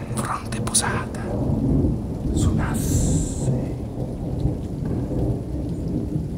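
Binaurally recorded thunderstorm: thunder rumbling low and continuously, with rain.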